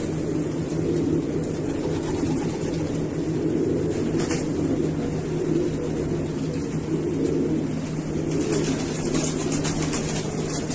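Many domestic fancy pigeons cooing together in a crowded loft, a steady overlapping murmur over a low hum. There are a few short clicks about four seconds in and again near the end.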